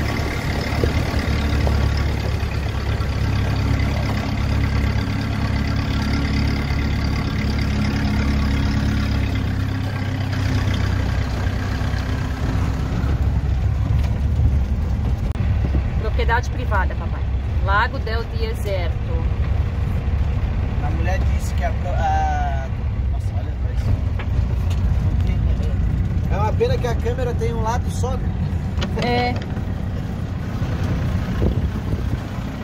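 Motorhome built on an Agrale truck chassis, heard from inside the cab while driving: a steady low engine and road rumble. For the first ten seconds or so a steady whine of several tones runs over it, then fades out.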